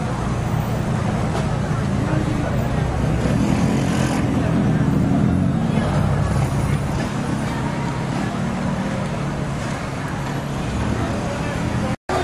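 Street traffic noise, a steady low rumble of vehicle engines nearby, with voices in the background.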